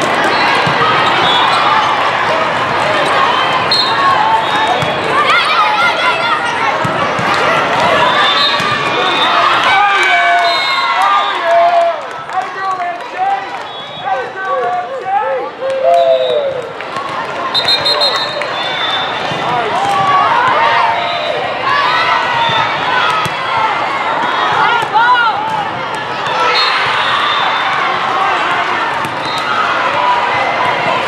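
Indoor volleyball match in a large hall: many overlapping voices of players and spectators calling and shouting, with the smack of volleyballs being hit and bouncing on the court.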